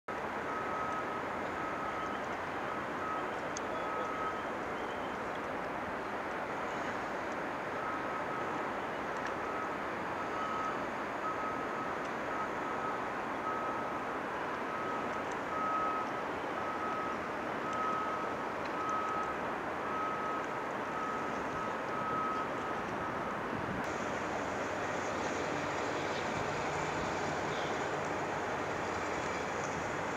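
Steady hum of construction machinery and traffic, with a high single-pitched warning beeper repeating about one and a half times a second. The beeper pauses for a few seconds near the start and stops a few seconds before the end.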